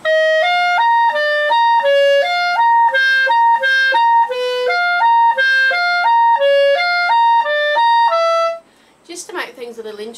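Clarinet playing an even run of notes that leaps back and forth between a repeated upper C and a moving lower line, the lower notes brought out with a slight tenuto to make a hidden tune. The run ends on a held lower note a little over eight seconds in.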